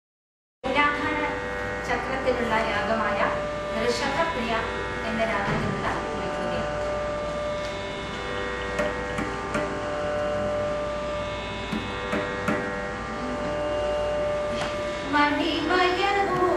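Carnatic vocal music: a steady buzzing drone starts after a moment of silence, with women's voices singing gliding phrases over it near the start and again near the end, and the drone sounding alone through the middle.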